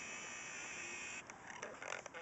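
A faint, steady high-pitched whine from a camcorder's zoom or focus motor as it closes in, cutting off suddenly just over a second in, followed by a few faint clicks.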